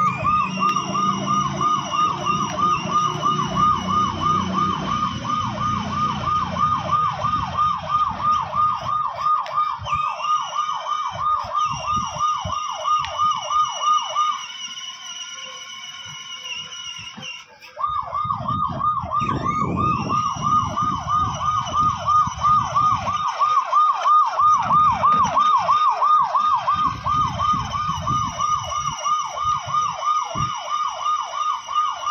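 Electronic siren sound from a child's battery-powered ride-on toy motorcycle: a fast, high warble of about three to four wails a second that cuts out for about three seconds midway and then starts again. Under it is a low rumble of the toy's plastic wheels rolling on concrete.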